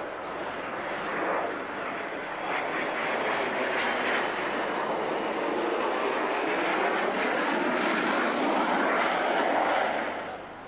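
An F-16 fighter's jet engine running on the ground: a loud rushing noise with a faint high whine that grows gradually louder, then cuts off suddenly at the end.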